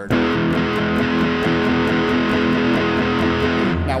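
Electric guitar, a Telecaster-style solid body, playing an E major chord voiced with the G-sharp (the third) ringing on top, picked in even repeated strokes about four a second. It stops just before the end.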